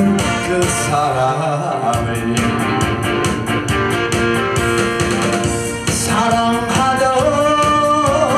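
A Korean trot song with a steady beat: a male singer over a recorded backing track, his voice dropping out in the middle for a short instrumental passage.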